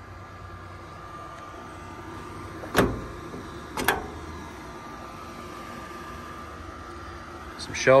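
Two sharp metal clacks about a second apart from handling the compartment door of a truck's steel service body and its paddle latch, over a faint steady hum.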